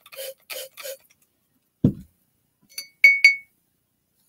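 A paintbrush knocked against the rim of a cut-glass water jar: three quick ringing clinks of glass, the last two loud, after a few soft short strokes in the first second.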